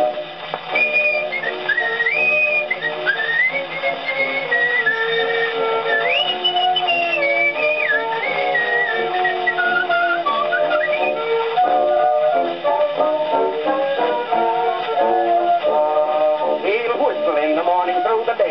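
A man whistling the song's melody over an instrumental accompaniment, played from an early record on a horn gramophone, with no sound above the treble range. The whistling carries the tune for roughly the first ten seconds, then the accompaniment continues alone.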